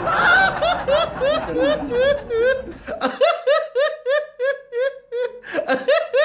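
A man laughing in a long string of high, evenly repeated "ha" syllables, about three a second. Applause runs under the first half and stops about three seconds in.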